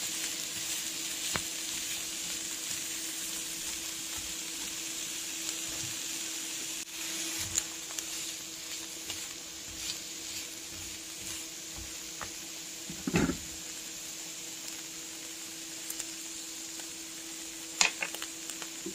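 Bell pepper strips sizzling steadily in a frying pan under a steady low hum, stirred now and then with a silicone spatula. A couple of short knocks of the spatula against the pan, one about two-thirds of the way through and one near the end.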